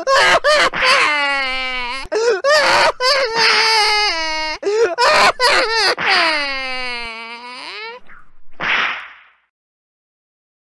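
A child's voice crying and wailing in long drawn-out sobs that waver in pitch, with a few sharp cracks of a belt whipping between them as he is spanked. The crying ends with a short hissing burst about nine seconds in.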